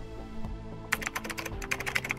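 A typing sound effect: a quick run of keyboard clicks starting about a second in, over soft background music.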